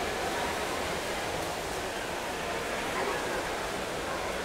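Steady splashing and churning of pool water by swimmers, with faint indistinct voices in the pool hall.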